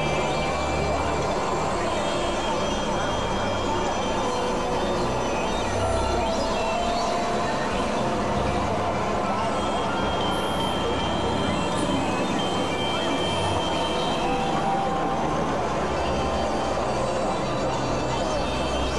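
Dense experimental sound collage: several music tracks layered over one another at once, making a steady, unbroken wall of noise with scattered held tones and voice-like fragments.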